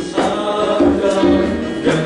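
A male vocal group singing together into microphones, accompanied by acoustic guitar.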